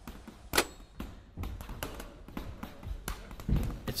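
A run of irregular knocks and thuds, roughly two a second, the loudest about half a second in.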